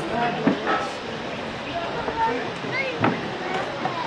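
Indistinct talking and chatter of several people close by, over a steady noisy background, with two short knocks, about half a second in and about three seconds in.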